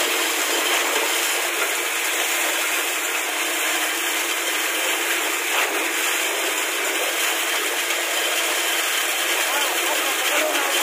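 Concrete pump running steadily while it pushes concrete out through its hanging delivery hose: a continuous, even machine noise.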